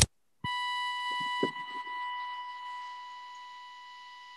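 A glitch in the video-call audio: a single steady electronic beep cuts in after a brief dropout, sounding like the flatline of a stopped heart. It drops in level after about a second and a half and then slowly fades.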